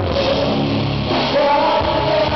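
A live J-rock band playing: electric guitars, bass and drums, with a male singer's voice over them.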